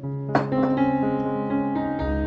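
Relaxing instrumental background music: plucked, guitar-like notes over sustained chords. A sharp click cuts in about a third of a second in.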